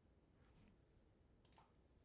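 Near silence with faint computer mouse clicks: a soft one about half a second in and a quick pair about a second and a half in.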